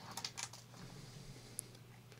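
Faint handling noise as a revolver is drawn from a leather holster: a few soft clicks and rubs in the first half second, then one small tick later, over a low steady hum.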